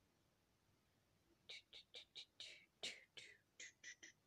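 Quiet whispering: a woman's voice murmuring a string of short breathy syllables under her breath, starting about a second and a half in after near silence.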